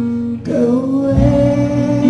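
Music: a woman's voice holding a long sung note that comes in about half a second in, over guitar and a steady low accompaniment.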